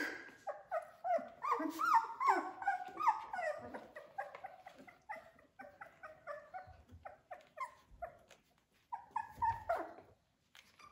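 A litter of three-week-old Australian Labradoodle puppies whining, many short high calls overlapping at first and thinning out after about four seconds.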